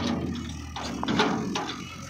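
Tractor engine running steadily while the PTO-driven tipping trolley's bed lowers, with irregular knocks and rattles, the loudest about a second in.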